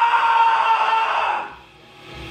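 A man's rock scream held on one pitch into a microphone, sung with the non-vocal scream technique; it fades out about a second and a half in.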